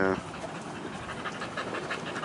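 A dog panting steadily with her mouth open.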